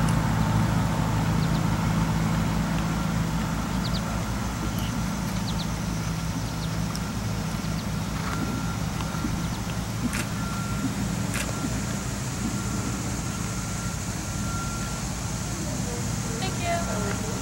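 Steady low rumble of a motor vehicle's engine running nearby, easing a little over the first few seconds. A faint, steady high tone joins about halfway through, with two sharp ticks shortly after.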